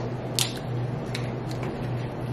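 A few sharp clicks of king crab shell being cracked and picked while eating, the loudest about half a second in, over a steady low hum.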